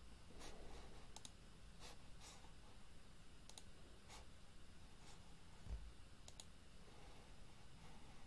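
Faint computer mouse clicks, some single and some quick double clicks, over near-silent room tone. There is one low bump a little past the middle.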